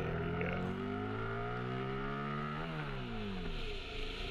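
Motorcycle engine of a 2015 Yamaha FZ-07, a parallel twin with an Akrapovič exhaust, pulling under throttle. Its pitch climbs steadily for about two seconds, then falls away for the last second or so as the revs drop.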